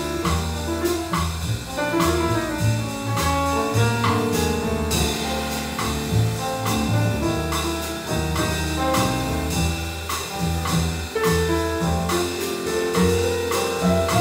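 A jazz piano trio playing a bossa nova: grand piano, plucked upright double bass and drum kit, with a steady pattern of cymbal strokes.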